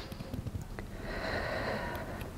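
A woman's slow, soft breath drawn in through the nose, starting about a second in, as part of a deep abdominal breathing exercise.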